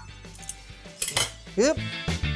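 A few sharp metal clinks from kitchen tongs and an air fryer's lid being handled as the lid is brought down over the basket, with background music underneath.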